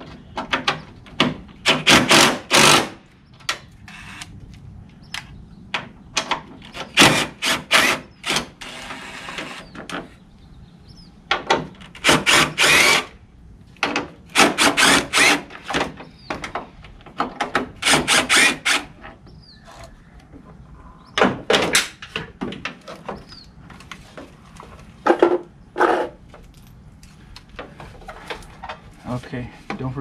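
Cordless impact driver hammering in short bursts of about a second, several times, backing out the 10 mm bolts that hold a headlight on a 1995–2000 Chevy Tahoe, with clatter of the plastic headlight housing and bracket being worked loose.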